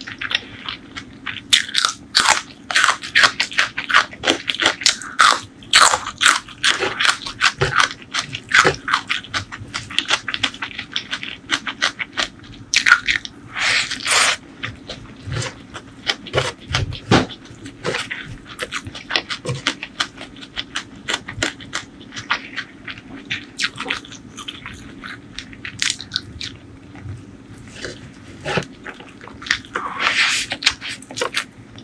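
Close-miked eating: crisp bites and crunchy chewing of raw bitter gourd and a crunchy fried topping over rice. The crunching is dense through the first half with a loud cluster about 13 seconds in, then thins to lighter, sparser chewing.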